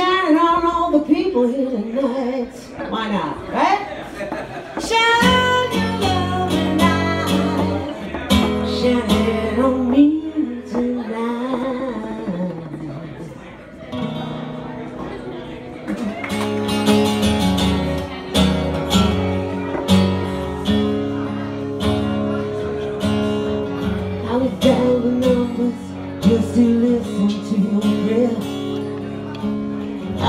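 Live acoustic song: a woman singing to her own strummed acoustic guitar, the chords coming in fully about five seconds in.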